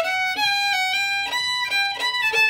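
Solo fiddle playing an Irish double jig at a slow teaching tempo, one clear melody line of separate bowed notes.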